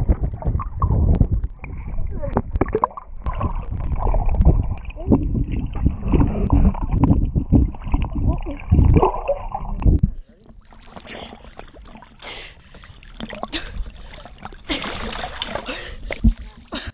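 Muffled rushing water and knocks picked up by a submerged action camera as it moves through the water. About ten seconds in, the sound drops to a quieter, thinner wash of water with more hiss.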